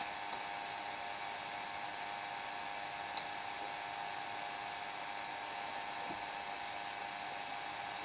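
Steady background hum and hiss of the recording room, fan-like, with a steady tone running through it. Two faint mouse clicks come through it, one just after the start and one about three seconds in.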